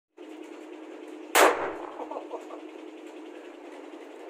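A single gunshot from a blank cartridge: one sharp crack about a second and a half in that rings away over about half a second.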